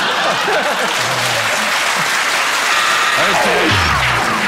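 Studio audience applauding and laughing: a loud, steady wash of clapping.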